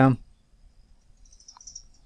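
A single faint computer mouse click about one and a half seconds in, after the end of a spoken word.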